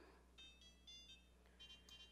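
Faint short electronic beeps from a glass cooktop's touch controls as a burner is switched on and its heat set. There are two small groups of beeps, the second near the end.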